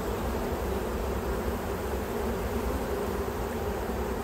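Caucasian-Carniolan honeybees of an opened hive buzzing in a steady, even hum; the colony is quite calm.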